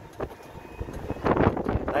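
Wind noise on the microphone and low road rumble from an open-sided tourist cart rolling along a street, growing louder in the second half.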